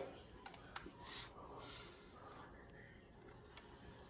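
Near silence: a few faint clicks and two soft breaths in the first two seconds, then room tone.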